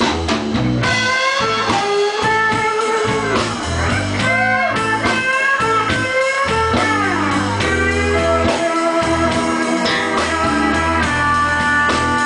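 Live electric blues guitar lead with repeated string bends, over an electric bass line.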